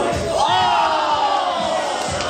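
A long, loud shout or held vocal cry, starting about half a second in and sliding slowly down in pitch, over dance music with a steady beat.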